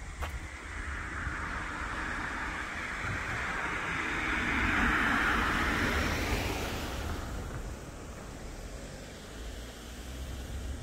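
A vehicle passing by: a hiss of road noise that swells over a few seconds, is loudest about halfway through, then fades away. Wind rumbles on the microphone throughout.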